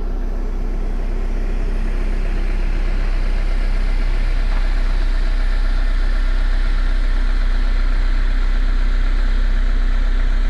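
Jeep Wrangler driving slowly on a dirt track: a steady engine hum under continuous tyre and road noise, growing slightly louder.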